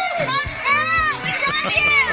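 Podcast intro music with several excited voices shouting and whooping over it, their pitch arching up and down.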